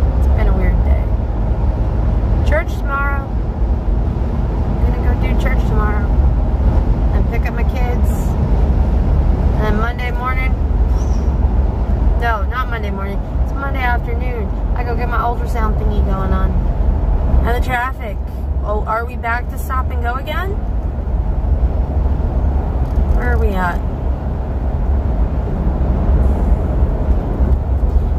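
Steady low rumble of road and engine noise inside a moving car's cabin, with a woman's voice talking on and off over it.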